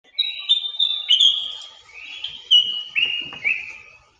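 A run of high, bird-like whistled chirps. Several notes are held briefly and step down in pitch, over a faint steady lower tone, and the sound fades out near the end.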